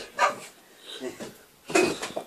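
Shih tzu barking in a few short barks at a bouncing exercise ball, the loudest near the end.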